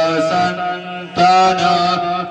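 A priest chanting Sanskrit puja mantras in long, drawn-out held notes, with a short break about halfway through before the chant resumes.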